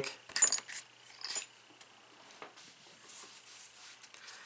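Small metal vape-tank parts handled in a foam-lined packaging box: a few light metallic clinks and taps in the first second and a half, then faint handling rustle.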